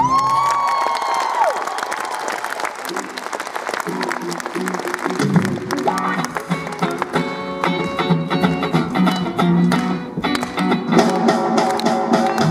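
Audience applauding as a song ends, then a band with electric guitar and accordion starts playing again about five seconds in.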